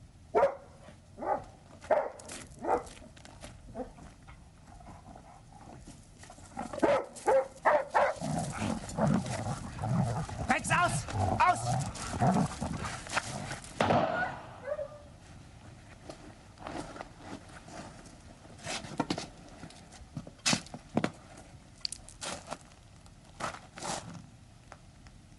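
A dog barking in short repeated barks, then a dense, louder stretch of barking and commotion for several seconds, trailing off into scattered short sharp sounds.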